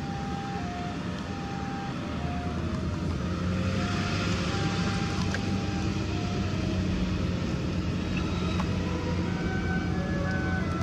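Car engine and road noise heard from inside the cabin, a steady hum that grows a little louder about three and a half seconds in. A faint, slow melody of single held notes plays over it.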